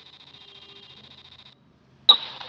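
Faint steady hiss that cuts out about a second and a half in, leaving near silence.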